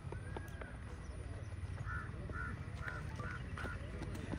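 A bird calling: a run of about five short, evenly spaced calls in the second half, over a low outdoor rumble.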